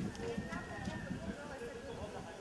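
Indistinct voices, too faint or unclear to make out words, over irregular low thumps and knocks.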